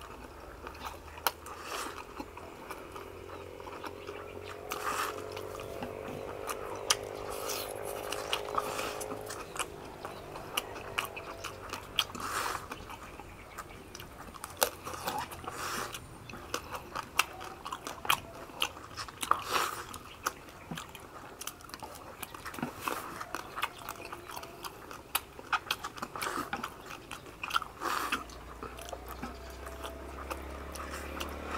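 Two people eating fast: chewing, slurping rice noodles and biting crunchy roast pork, with many short crunches and clicks scattered throughout. A faint wavering hum sounds from about four to ten seconds in.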